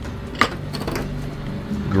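Soft background music, with a single sharp clink about half a second in as a small ceramic bowl is handled on the steel counter.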